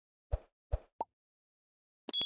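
Subscribe-button animation sound effects: three short pops within about a second, the last one higher and sharper, as the button is clicked.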